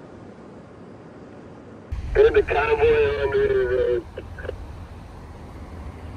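Two-way radio in a moving vehicle: the channel opens with a sudden hiss and hum about two seconds in, a voice comes over it for about two seconds, and the open channel's hiss runs on afterwards.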